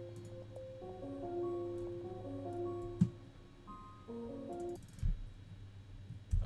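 A piano melody and chords, produced in FL Studio, playing back as a finished beat with sustained, overlapping notes. There is a sharp click about three seconds in, and the playback stops a little before five seconds in.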